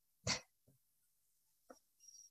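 A brief breathy puff of air from a person, like a short exhale, about a quarter second in. Then near silence with a faint click near the end.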